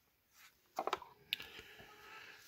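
Thick trading cards being handled and slid apart by hand: a few faint taps, then a sharp click about a second in, followed by a soft rustle.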